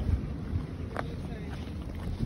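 Wind buffeting the phone's microphone in a low, uneven rumble, with one sharp click about a second in.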